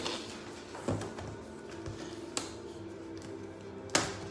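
Quiet background music with three sharp snaps about a second and a half apart, the last near the end the loudest, from bare hands working at the plastic packing straps on a cardboard box.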